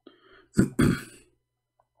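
A man clearing his throat: a soft breathy start, then two harsh rasps close together about half a second in.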